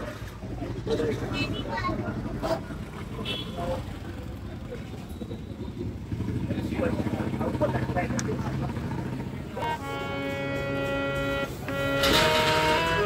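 Street traffic and people talking, then about ten seconds in a harmonium starts sounding a held chord of several steady notes.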